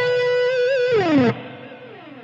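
Electric guitar holding the last note of a descending C-sharp minor seventh arpeggio, a B on the 16th fret of the G string. Vibrato starts about half a second in. Just before a second in the note slides down in pitch and fades to a faint ring.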